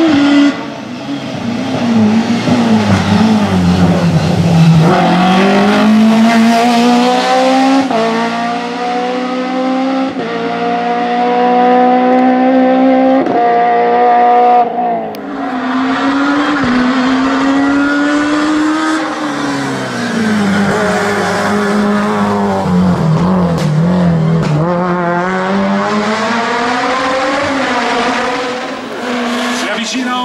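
Hill-climb race car engine at full throttle, its pitch climbing and dropping back at each gear change as it accelerates uphill. About halfway through there is a break, then the revs fall away into a bend and climb again near the end.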